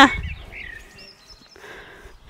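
Faint bird chirps, a few short calls, with a soft rustle near the end.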